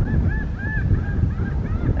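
A flock of American flamingos honking: many short calls, several a second, overlapping one another. Wind rumbles on the microphone underneath.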